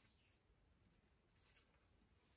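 Near silence: room tone, with a faint brief rustle of twine and dried grass being handled about one and a half seconds in.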